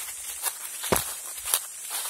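Footsteps on a leaf-littered forest trail, a step roughly every half second, the loudest about halfway, with a steady high hiss underneath.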